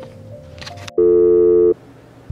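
A loud electronic buzzer tone sounds once, about a second in, holds steady for under a second and cuts off abruptly.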